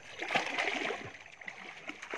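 Water splashing and sloshing as a person wades chest-deep into a river, busiest in the first second and quieter after.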